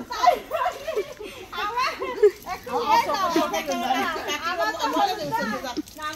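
Several women talking excitedly over one another, with laughter, in lively back-and-forth chatter.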